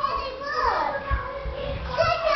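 Young children's high voices calling out and crying out as they play, one cry falling in pitch about half a second in, with a few low thumps around the middle.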